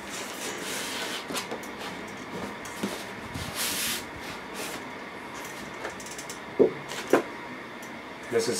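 Cardboard outer sleeve being slid up and off a large figure box: cardboard rubbing and scraping on cardboard, loudest about halfway through, then two knocks near the end as the box and sleeve are handled.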